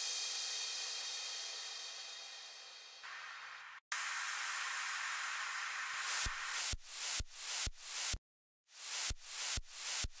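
Electronic dance music build at 128 BPM: a long white-noise sweep fades down and cuts briefly, then a fresh burst of noise comes in. About six seconds in, kick drums start at a little over two a second, with the noise ducking after each kick and swelling back. The track drops out for half a second before the kicks resume.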